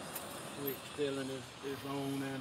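A man talking, from about half a second in, over a steady faint background hiss.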